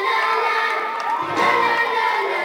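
A crowd of children and young people cheering and shouting, many voices at once, with music still playing underneath.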